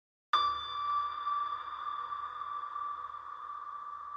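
A single electronic tone that starts suddenly about a third of a second in and is held, slowly fading, like a ping or a drone opening a soundtrack.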